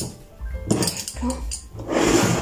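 Metal pastry docker rolled over raw shortcrust pastry in a ceramic tart dish, its spiked roller making a scraping, clinking rattle in short strokes about half a second in and again near the end.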